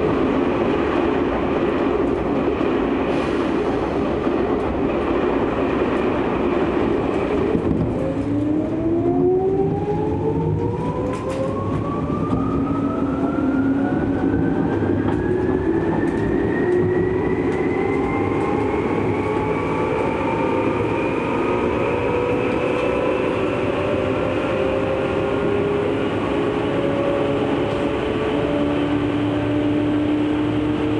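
Tokyu 8500 series electric train heard from inside the car: a steady rumble, then from about eight seconds in the traction motors' whine, several tones climbing together in pitch as the train accelerates away from the station, levelling off near the end. At the start another train is passing on the adjacent track.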